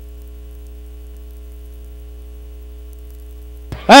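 Steady electrical mains hum: a low buzz with a ladder of even, unchanging overtones, and nothing else standing out until a voice comes in at the very end.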